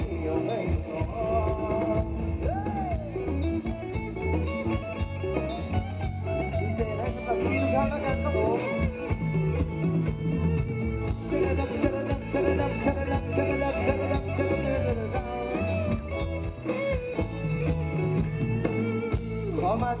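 Live Thai ramwong band playing dance music: a steady beat and repeating bass line under a moving melodic line.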